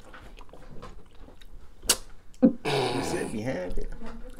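Close-up eating sounds of fried chicken wings being bitten and chewed, with small mouth clicks and one sharp click about two seconds in. A low murmuring voice comes in near the end.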